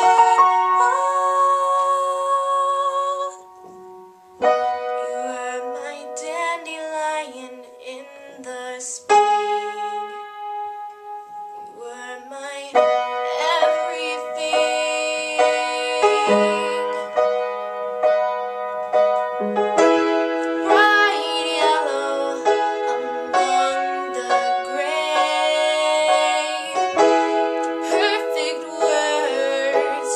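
A girl singing her own song with piano accompaniment, the music breaking off briefly a few seconds in.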